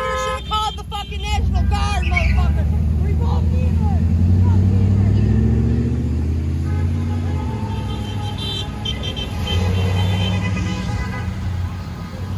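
A vehicle horn's held toot ends about half a second in. Then a pickup truck's engine close by speeds up, rising in pitch for a few seconds, and runs on more evenly as it pulls away.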